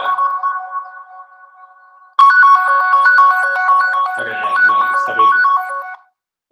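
Mobile phone ringtone playing a repeating melody: it fades away, then starts again loudly about two seconds in. The phone is ringing with an incoming call.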